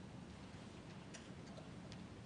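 Faint, irregular small clicks over a low steady room hum: the congregation handling communion cups and passing the trays in silence.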